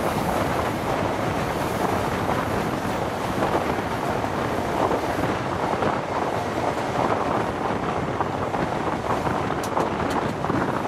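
An InterCity 125 HST running at speed: a steady rush of wind over a microphone held out of a carriage window, mixed with the train's wheels running on the rails.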